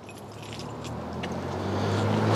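A motor vehicle's engine hum growing steadily louder as it draws near, with faint jingling of keys.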